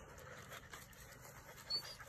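A litter of Labrador retriever puppies panting faintly, with a brief high squeak near the end.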